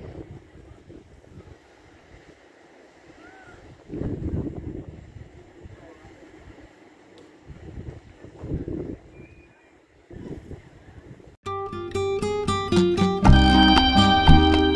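Quiet open-air ambience with a couple of louder rushes of noise. About eleven seconds in, background music of plucked, guitar-like notes starts suddenly, and a heavy bass joins it near the end.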